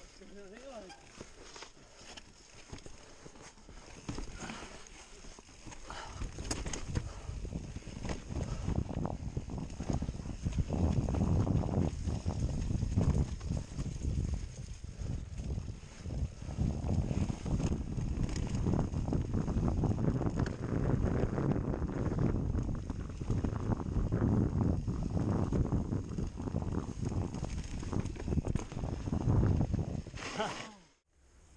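Mountain bike descending rough dirt singletrack: tyres rolling over dirt and rocks, and the bike rattling and knocking over bumps, with wind buffeting the microphone. It grows much louder about a third of the way in as speed picks up.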